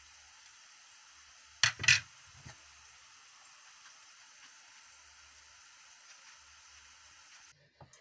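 A metal spoon scooping seeds from a halved sweet melon and knocking against a ceramic plate: two sharp knocks close together a little under two seconds in, then a lighter one. A faint steady hiss runs under them and cuts off shortly before the end.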